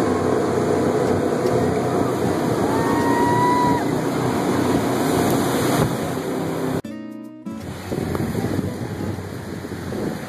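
Open jet boat running on the river: steady engine and water-jet noise with wind and spray, and a couple of brief high whistle-like tones in the first few seconds. About seven seconds in the sound drops out for a moment, then the boat runs on, quieter.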